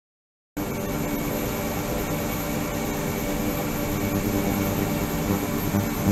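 Ultrasonic tank equipment running, with 28 kHz and 72 kHz transducers and a liquid circulation system: a steady hum and hiss with several held tones. It starts abruptly about half a second in, after a brief silence.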